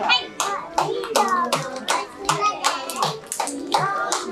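Hand clapping, a quick uneven run of sharp claps, mixed with young children's high voices calling out.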